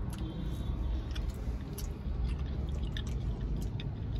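Soft chewing and wet mouth clicks of someone eating a fried cheese ball, over a steady low rumble.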